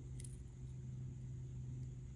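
Quiet, steady low electrical hum of room tone, with one faint, brief click about a quarter second in from small metal tweezers handling the hotend.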